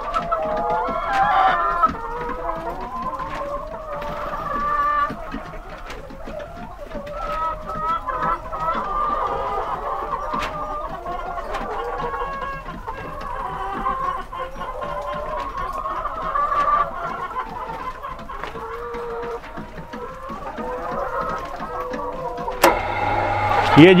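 A flock of Lohmann Brown laying hens clucking, with many overlapping calls throughout. Near the end a sharp click, and then a low steady hum begins as the timer relay switches on the shed's exhaust fan to clear ammonia.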